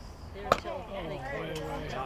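A baseball pitch smacks into the catcher's leather mitt with a single sharp pop about half a second in. Voices talking follow.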